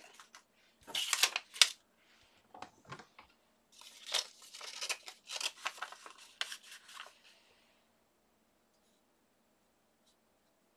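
A stiff paper envelope rustling and crinkling as it is handled and bent while embossing powder is put on and tipped off it, in a string of short rustles over about seven seconds.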